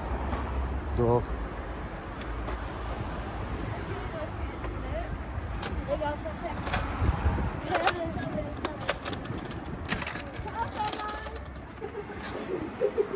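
City street traffic rumbling steadily, with snatches of voices now and then.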